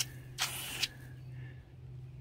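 A pistol-grip garden hose spray nozzle shut off abruptly, its water spray cutting out. About half a second later comes one short spurt of spray hiss, under half a second long.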